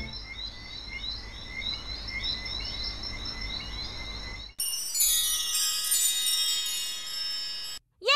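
Cartoon sound effect of a small animal's chirping call, repeated about three times a second over a low rumble. About four and a half seconds in it cuts to a bright, shimmering chime-like sparkle that falls in pitch.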